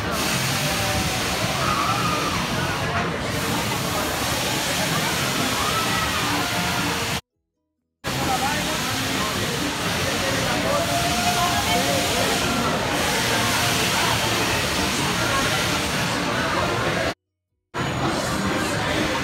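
Amusement-park ride ambience: a steady rushing noise with crowd voices and music over it. The sound cuts out to silence twice, briefly about seven seconds in and again near the end.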